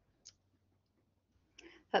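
Near silence with a single short, faint click about a quarter of a second in; a voice begins right at the end.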